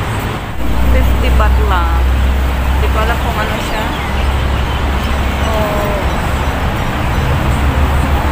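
Roadside street ambience: a steady low traffic rumble that gets louder about half a second in, with scattered background voices of passers-by.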